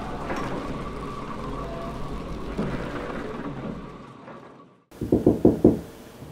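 A low rumbling noise with a ringing tone fades away over about four seconds, cutting to silence. Then come about five quick, heavy knocks in under a second.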